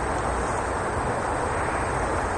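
Steady outdoor background rumble with no distinct events, the kind of low wash that distant traffic or an aircraft leaves on a field recording.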